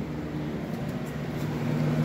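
Electric fans running in a room: a steady whir with a low hum, growing a little louder toward the end.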